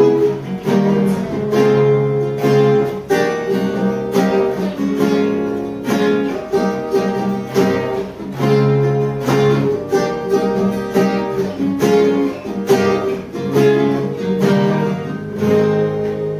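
Two acoustic guitars strummed together in steady chords, with a woman singing the melody over them. The playing begins to die away near the end.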